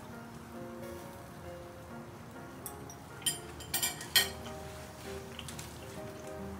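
Background music with held tones runs throughout. Over it comes a short cluster of sharp clicks and crackles in the middle; the loudest lands just after four seconds.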